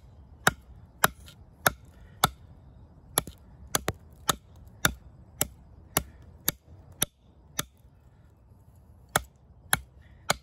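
Schrade Old Timer 169OT fixed-blade knife, with its 5-inch D2 steel drop-point blade, chopping a V-notch into a log. Sharp blade-into-wood chops come in a steady run of somewhat under two a second, with a short pause about eight seconds in before two more strikes.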